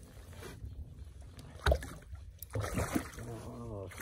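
Water splashing at the side of a kayak as a hooked rainbow trout is brought alongside and handled, with one sharp, loud knock a little under two seconds in. A man's voice murmurs through the last second or so.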